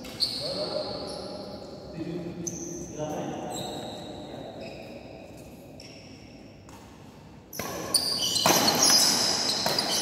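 Sneakers squeaking on an indoor badminton court, with sharp racket hits on the shuttlecock, echoing in a large hall. It is loudest near the end as a rally gets going.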